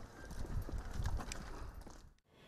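Footsteps of several people walking on bare dirt ground: irregular soft thuds and scuffs over a low rumble.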